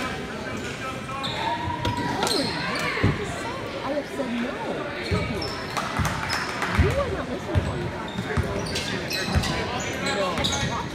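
A basketball being dribbled on a hardwood gym floor, with repeated thumps and short high sneaker squeaks over the steady chatter of a crowd, echoing in the gym.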